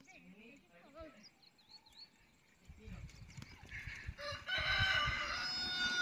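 A rooster crowing faintly in the second half, one held call, over a low rumble that builds from about halfway. Small birds chirp faintly near the start.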